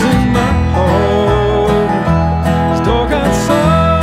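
Bluegrass band playing an instrumental passage between vocal lines: plucked acoustic strings with a lead melody that slides between notes, over a bass line.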